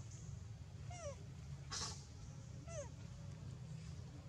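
A macaque gives two short, squeaky calls that fall in pitch, about a second and a half apart. Between them comes a brief rustling hiss.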